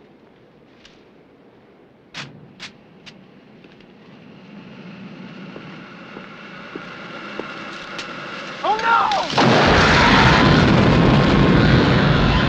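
Movie flamethrower firing: a loud, continuous roar of flame that starts suddenly about nine seconds in. Before it comes a quiet stretch with a few sharp clicks and a slowly rising hiss.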